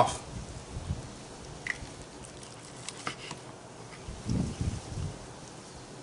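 Knife slicing through a rack of smoked, sauce-glazed pork ribs, with a few light clicks from the knife and metal tongs against the tray. A short, louder low sound comes about four and a half seconds in.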